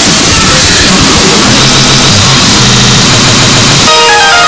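Loud, harshly distorted electronic dance music in a DJ mix: a dense wall of noise over a repeating bass line. Right at the end the mix cuts to a cleaner track with a bright keyboard melody.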